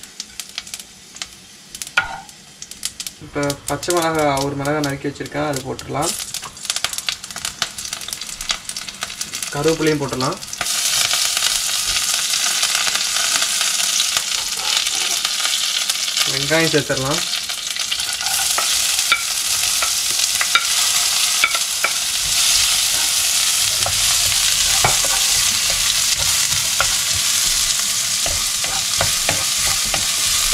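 Hot oil in a nonstick pan crackling with scattered pops as spices temper. From about ten seconds in, a louder steady sizzle as more ingredients go into the oil and are stirred with a wooden spoon.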